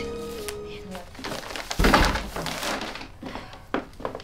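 Soft film music fading out, then a house front door shutting with a thud about two seconds in, followed by a few lighter knocks as a paper grocery bag is set down.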